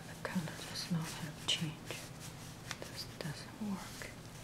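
A person's quiet whispered murmuring in short, broken bits, with no clear words, over a low steady hum.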